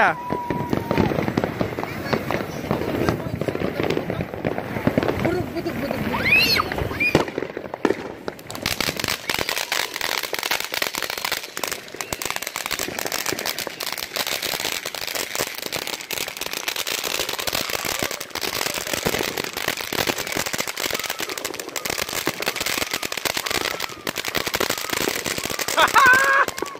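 Ground fountain firework spraying sparks with a dense, continuous crackle, starting about eight seconds in. Before that, people's voices are heard.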